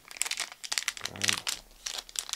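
Foil trading-card pack crinkling and crackling close to the microphone as it is worked open by hand.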